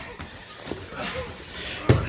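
Faint rustle of wrestlers grappling on a mat, with a brief faint voice about a second in, then a single sharp knock near the end.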